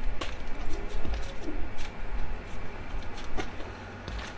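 Plastic net cups clicking sharply a few times as they are handled and pushed into the holes of a PVC pipe. A faint low bird call comes in about a second in.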